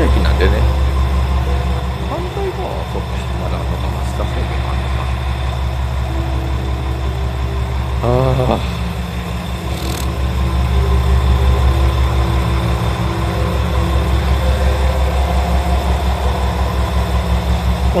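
Diesel railcar engine idling with a steady low throb. A short warbling tone sounds about eight seconds in.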